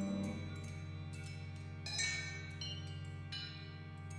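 Contemporary chamber ensemble playing: held low notes underneath, with several struck notes that ring on over them, the loudest at the start and about two seconds in.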